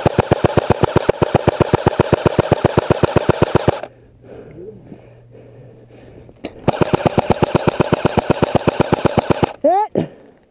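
AK-pattern airsoft electric gun firing full auto: an even mechanical rattle of about fifteen shots a second, in two long bursts, the first stopping about four seconds in and the second starting about seven seconds in and running almost to the end.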